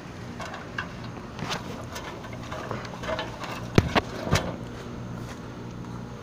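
Feet stepping up the rungs of a metal extension ladder during a climb: a series of light knocks with two sharper clanks about four seconds in, over a steady low hum.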